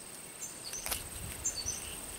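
A high, steady insect trill with a few short bird chirps over it. About a second in, a brief knock and a low rustle of handling as the bracket fungus is turned over in the hand.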